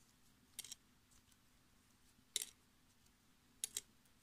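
Faint, sharp clicks from hands working a tatting shuttle and thread while making picots: a pair just after half a second in, a louder single one around the middle, and a few more near the end.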